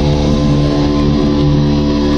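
Live rock band playing loud, with electric guitar holding long sustained notes over the band.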